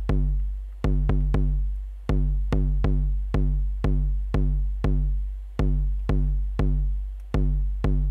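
Eurorack kick drum module triggered by the GateStorm gate sequencer, playing a syncopated pattern of about two hits a second at uneven spacing. Each hit is a short click followed by a deep boom that decays before the next.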